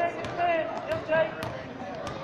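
Basketball dribbled on a hardwood gym floor, a sharp bounce about every half second, over the voices of players and spectators.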